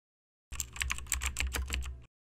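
Computer keyboard typing: a fast run of keystrokes, about eight a second, starting about half a second in, as text is typed into a search bar.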